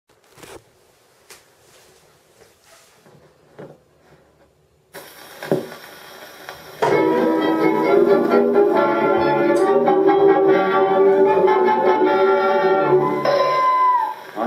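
A 78 rpm record starting on a Victor Orthophonic Victrola Credenza acoustic gramophone. After a few faint clicks, the needle meets the groove about five seconds in with a hiss of surface noise. From about seven seconds a band introduction plays loudly, ending on a held note.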